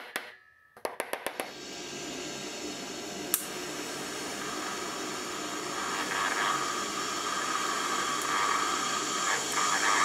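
A quick run of light hammer taps on a steel plug being driven into a hole in a steel plate, then a TIG welding arc on steel plate hissing steadily for the rest of the time and cutting off suddenly at the end.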